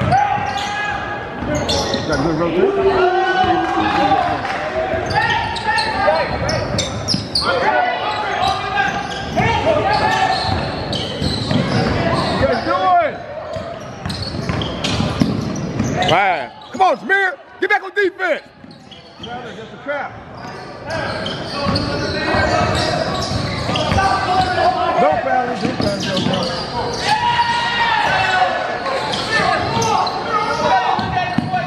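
Basketball dribbled on a hardwood gym floor, with voices echoing through the large gym. Sneakers squeak on the court briefly, around the middle.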